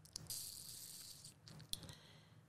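Soft hiss of breath close to the microphone, about a second long, followed by a few small mouth clicks as a woman pauses to think.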